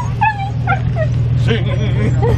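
Siberian husky "singing": a quick run of short whining woo-calls, each rising and falling in pitch, over a steady low rumble.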